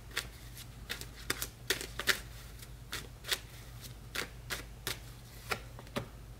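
A tarot deck being shuffled by hand: a quiet run of irregular, crisp card clicks and slaps, about two or three a second.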